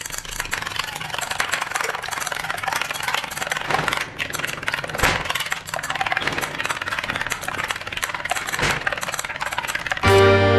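Metal spoon beating raw eggs in a glass bowl: a fast, continuous clinking of the spoon against the glass.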